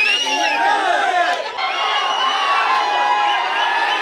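A dense crowd of fans shouting and cheering, many voices overlapping. The crowd noise changes abruptly about a second and a half in.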